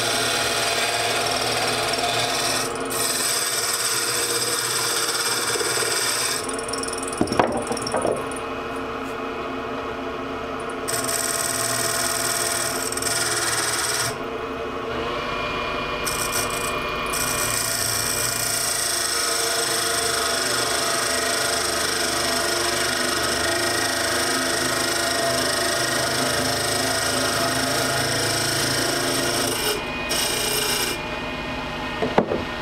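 Wood lathe running while a hand-held turning tool cuts into a spinning hardwood duck-call blank, taking down the mouthpiece end. The scraping cut comes and goes as the tool is pressed in and eased off, pausing twice, with a brief louder scrape about seven seconds in.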